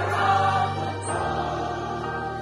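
Church choir singing a hymn with a small orchestra of violins, cello, clarinet and brass, in sustained chords; the harmony moves to a new chord about a second in.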